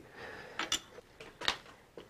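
A few light clicks of small tools or parts being handled at a milling machine vise, the sharpest about one and a half seconds in.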